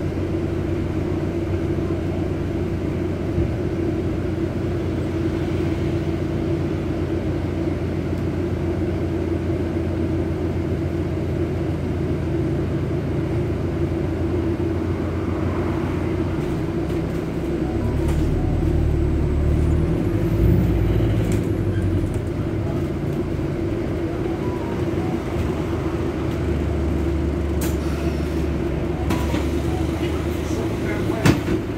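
Double-decker bus running along a city street, heard from inside the passenger saloon: a steady engine and drivetrain drone with road noise, swelling louder about two-thirds of the way through as the bus pulls harder, and a few sharp clicks near the end.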